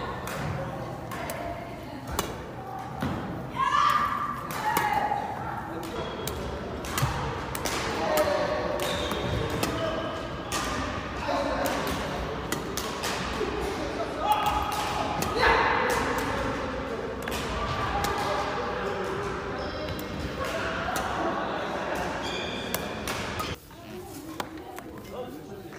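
Badminton rally drill in a large, echoing sports hall: rackets hitting shuttlecocks again and again, with footsteps on the wooden court floor between the hits.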